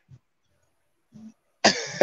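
Near silence on a livestream call line, broken by two brief, faint throat sounds from a person about a second apart.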